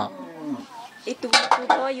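People talking, with a few light clinks of kitchenware being handled close by.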